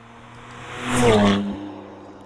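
A car driving past: engine and tyre noise swell to a peak about a second in and then fade, with the engine note dropping in pitch as it goes by.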